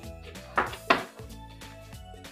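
A kitchen knife cutting through a green chili pepper and striking the cutting board, two sharp strokes about half a second apart near one second in, over background music.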